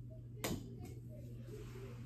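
Plastic practice golf ball landing: one sharp knock about half a second in, then a fainter tap as it bounces, over a steady low room hum.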